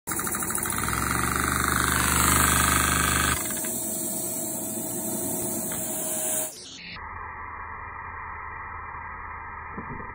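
A LEGO vacuum engine running: a steady rushing noise with a low hum. The sound changes abruptly about three seconds in, then turns dull and muffled at a cut about six and a half seconds in.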